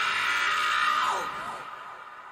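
Beatless breakdown in a techno DJ mix: a sustained high synth sound with a few falling sweeps, fading away in the second half with no drums or bass.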